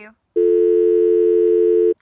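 Telephone dial tone, a steady two-note hum held for about a second and a half that starts shortly in and cuts off abruptly.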